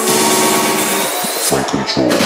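Electronic dance music from a DJ set in a breakdown with the kick drum and bass out, leaving held synth tones. Near the end the treble is filtered away, just before the beat comes back in.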